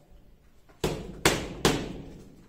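Three quick jabs from a boxing glove landing on a focus mitt, sharp slaps about 0.4 s apart in the second half.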